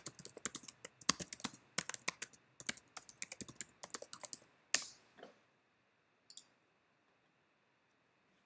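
Computer keyboard and mouse clicking: a quick, irregular run of clicks over the first half, then a few single clicks.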